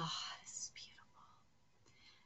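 A woman's voice: the end of a groaned "ugh" trailing off into a breathy, whisper-like exhale in the first second, then fading out.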